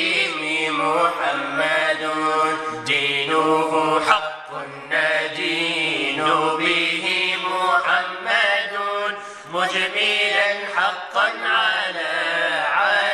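A male voice chanting an Arabic devotional song in praise of the Prophet Muhammad, drawing out long melismatic notes with a wavering pitch, with brief pauses for breath.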